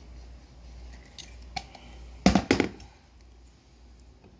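A quick clatter of three or four hard knocks a little past halfway, after a single faint click: a hard object being handled or set down.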